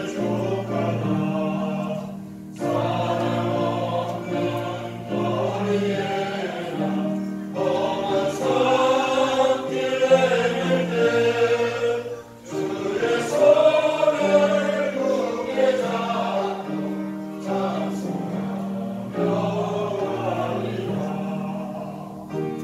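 A small mixed group of men, women and children singing a hymn together, phrase after phrase with brief pauses for breath between.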